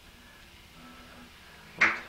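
Quiet room tone with a faint, steady low hum, then a man's voice starting near the end.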